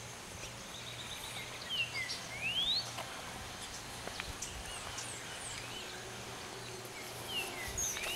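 Dawn birdsong: a call that drops and then sweeps upward in pitch comes about two seconds in and again near the end, with scattered short high chirps over a faint, steady low hum.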